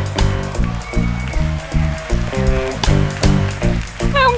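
Live band playing an upbeat instrumental with a steady drum beat and a bouncing bass line, with saxophone and electric guitar on stage.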